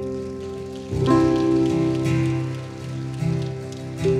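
Slow instrumental worship music led by keyboard: sustained chords over a low bass note, with new chords coming in about a second in and again after about three seconds.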